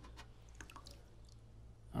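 Faint small clicks and drips as coins are fished by hand out of the water in an ultrasonic cleaner's stainless steel basket.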